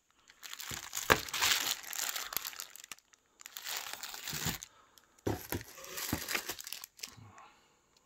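Clear plastic bags of small steel hub parts crinkling as they are handled and rummaged through, in several bursts with a few sharp clicks.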